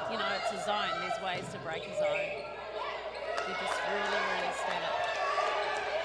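Indoor netball game in play: players and spectators calling out, with sports shoes squeaking on the wooden court and the sound ringing in a large hall.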